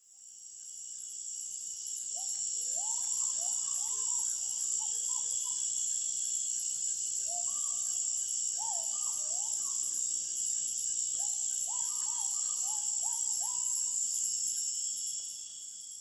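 A steady, high-pitched insect chorus with a bird calling in three bursts of short, rising whistled notes. The ambience fades in at the start and fades out near the end.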